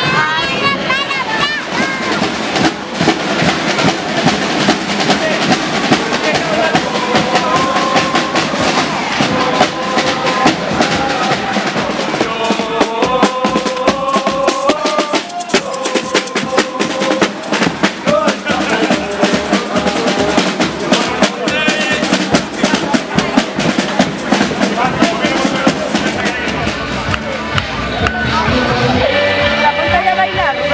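Carnival street band of marching drummers playing snare and bass drums in a fast, steady beat, with a tune carried over the drumming through the middle part.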